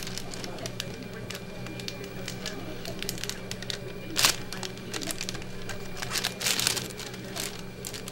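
Sterile paper-and-plastic peel packs of dialysis needles crinkling and tearing open in gloved hands, with a sharp crackle about four seconds in and a run of crinkling a little after six seconds, over a steady low hum.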